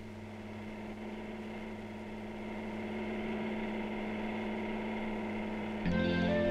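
A steady, engine-like mechanical drone with a fast, even pulse, running unchanged at one pitch and breaking off right at the end.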